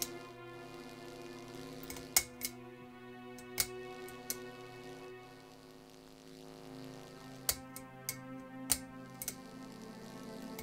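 Low sustained film-score drone of steady held tones, with sharp clicks scattered irregularly through it, about eight in all.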